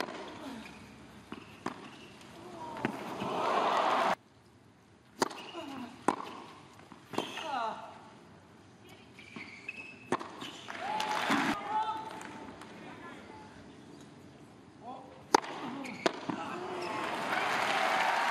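Tennis ball struck by racket strings in rallies on a hard court, heard as sharp single pops a second or more apart. Crowd noise swells between points and applause builds near the end.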